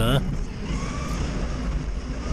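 Doosan 4.5-ton forklift's engine running with a steady low hum, heard from inside the cab.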